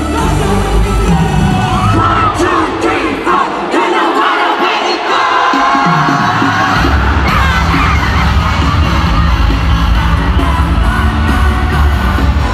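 Live K-pop music over an arena PA, heard from the stands with a large crowd cheering. The heavy bass beat drops out for a few seconds while voices carry on above it, then the beat comes back hard about seven seconds in.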